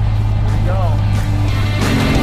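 Propeller plane's engine droning steadily, heard from inside the cabin as the plane rolls down the runway, with a short vocal sound about two-thirds of a second in. Rock music fades in near the end.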